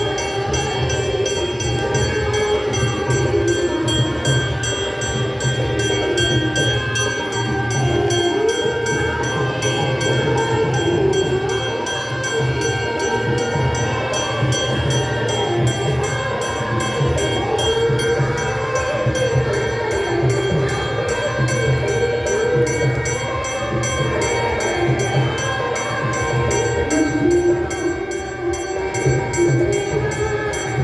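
Aarti hymn being sung with music: a wavering sung melody over a fast, steady ringing rhythm of percussion, continuing without a break.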